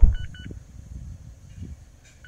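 A low thump, then two short high beeps from a Mazda's i-Stop switch confirmation chime as the i-Stop button is pressed: the system's on/off toggle sound.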